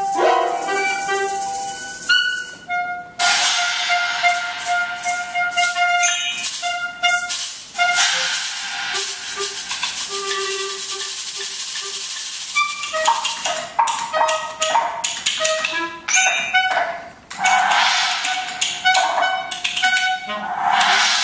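Live contemporary chamber music for clarinet, cello, harp and percussion: held wind notes over a dense hissing, rattling noise texture, broken by a few brief pauses.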